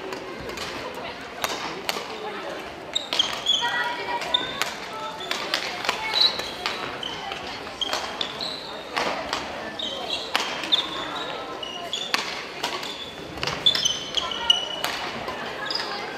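Badminton doubles rally on a wooden gym floor: rackets striking the shuttlecock again and again with sharp clicks, and sneakers squeaking in short high chirps as the players move, over a murmur of voices in the hall.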